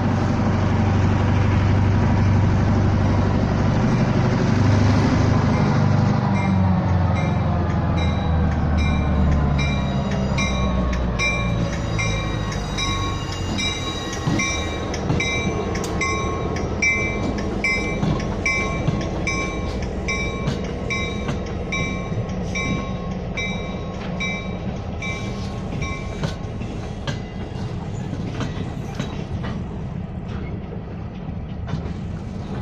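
Diesel locomotive passing close by, its engine loud for the first few seconds and dropping in pitch as it goes past. Then passenger coach and flatcars roll by on the rails, with a short metallic ring repeating about one and a half times a second.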